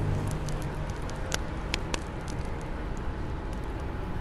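Steady background hiss of a workshop's room ambience, with faint, scattered crackles and ticks.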